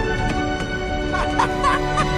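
Background music with steady sustained tones, joined about a second in by a few short warbling calls, like a comic sound effect.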